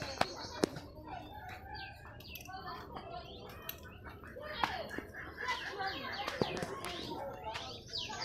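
Small birds chirping in many short calls, with faint human voices in the background and a few sharp clicks, two of them near the start.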